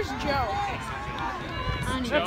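Faint, distant voices of spectators calling out, with a low crowd murmur.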